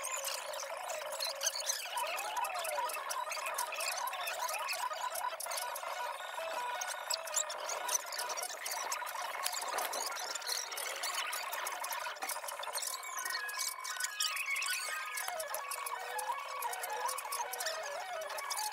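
Fast-forwarded audio with its pitch raised: squeaky, chipmunk-like voices and scraping handling noise, with no low sound at all.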